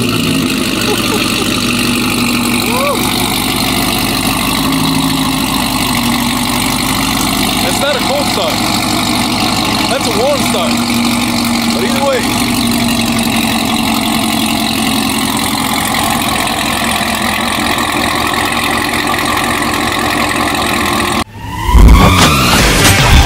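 Chevrolet Camaro ZL1's supercharged 6.2-litre V8 idling steadily through its exhaust just after a cold start. Near the end it is cut off suddenly by loud music.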